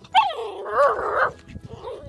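A chocolate Labrador puppy whining: a high cry that slides down in pitch just after the start, then wavers for about a second, with a fainter whine near the end.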